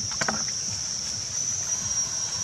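Steady high-pitched insect drone, with low rumbling noise beneath it and a few short clicks about a quarter second in.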